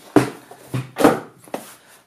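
White cardboard product box and its inner tray being handled, rubbing and knocking together in about four short scraping sounds, the loudest about a second in.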